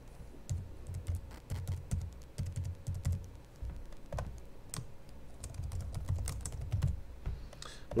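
Computer keyboard typing: keys tapped in quick runs with short pauses between them.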